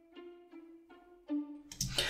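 A virtual (sampled) string part plays a run of short repeated notes, about two or three a second. The timing is slightly uneven because it has been randomized off the grid to sound more human. A man's voice starts in near the end.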